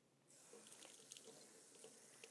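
Kitchen faucet running a thin stream of water into a small spray bottle to fill it, faint and steady, starting a moment in.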